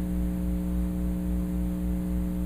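Steady electrical mains hum: an even, unchanging buzz of stacked low tones with nothing else over it.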